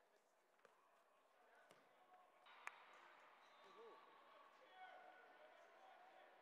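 Near silence: faint indoor-hall ambience with distant voices, and one sharp faint knock about two and a half seconds in.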